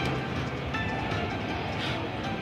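Video slot machine in its free-games bonus, playing bonus music and jingles while the win meter counts up, over a steady background din.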